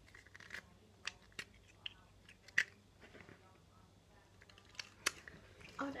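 Plastic highlighter pens being handled: scattered light clicks and taps, with a sharper click about two and a half seconds in.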